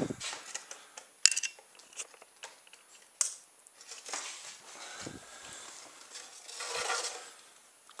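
Light clicks and knocks of a small homemade plastic toy car being picked up, turned around and set down by hand: polystyrene-plate wheels and plastic parts knocking, with the sharpest knocks about one and three seconds in, then a faint rustle.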